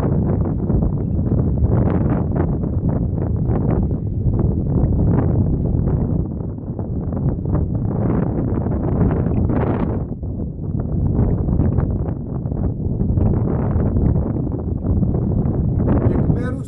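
Wind buffeting the microphone: a loud, gusty low rumble that rises and dips irregularly.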